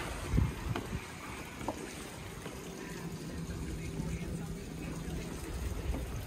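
Wind rumbling on the microphone while walking onto a sailing yacht's teak side deck: a low thump of a footstep about half a second in, then a few lighter knocks. A faint steady hum runs through the middle.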